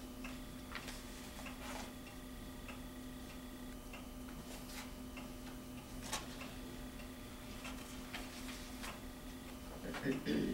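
Quiet meeting-room tone with a steady low hum, broken by scattered faint ticks and clicks and the soft rustle of paper sheets being handled and turned.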